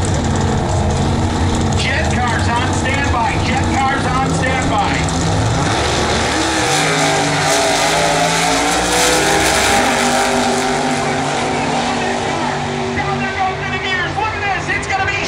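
Two nostalgia pro stock drag-racing V8s run side by side at the start line, then launch and accelerate down the strip, rising and stepping in pitch through the gear changes. They are loudest as they pass, around nine seconds in, then fade down track.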